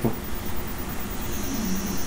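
Steady background hiss of room noise, with a faint high whine coming in after about a second and a half.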